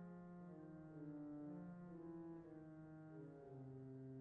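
Pipe organ playing softly: sustained chords with the bass and inner voices moving slowly from note to note.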